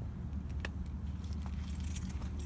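A bunch of keys jingling, with scattered light clicks and a cluster of high metallic ticks near the end, over a steady low rumble.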